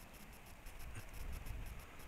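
Faint rustle of tobacco leaves being handled and broken off the stalk by hand, with a few soft crackles in the middle, over quiet field ambience.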